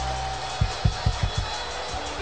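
Background worship music from a church band: a held low bass note, then a run of low drum beats about four a second.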